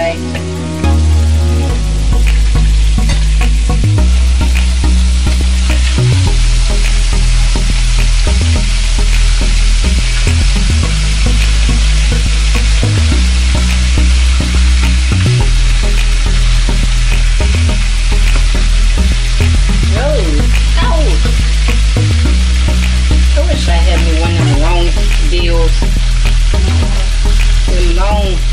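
Chicken pieces frying in a stainless-steel pan: a steady hiss of sizzling fat while the pieces are turned with a fork. Under it runs a loud low hum that steps between pitches every couple of seconds.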